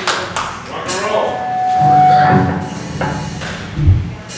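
Stage and crowd noise in the lull between songs of a live rock band: scattered voices, a few sharp knocks and taps, a short held tone about two seconds in, and a low thump near the end.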